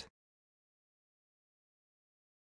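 Near silence: a dead gap between spoken words.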